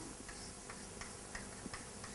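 Chalk on a blackboard as it writes: a few faint, short ticks over low room hiss.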